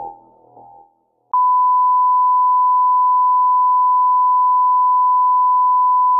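Music fades out in the first second; after a short silence a loud, steady, pure test tone starts and holds unchanged: the line-up tone that goes with colour bars.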